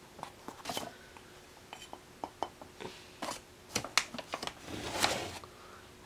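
Plastic bag liner crinkling and a plastic scoop scraping through dry modeling-mask powder, with scattered light clicks and taps. Brief rustles come about a second in, around the middle and a longer one near the end.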